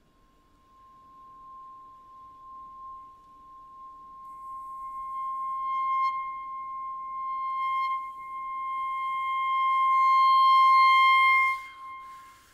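Solo clarinet holding one long high note that swells from almost nothing to loud over about eleven seconds, growing brighter as it builds, then breaks off just before the end.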